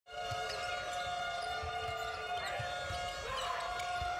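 A basketball dribbled on a hardwood court, dull irregular thuds, under a steady held chord of arena music that shifts about halfway through.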